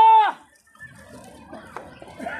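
The end of a loud, high, held vocal call that drops in pitch and stops about a third of a second in, followed by faint crowd noise.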